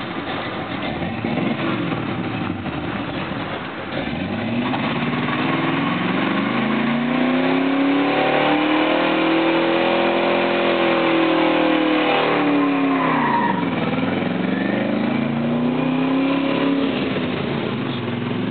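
1972 Chevrolet Impala's 305 small-block V8 revving hard during a burnout, its rear tyres spinning. The engine note climbs from about four seconds in, holds high, falls away briefly near thirteen seconds, then climbs again.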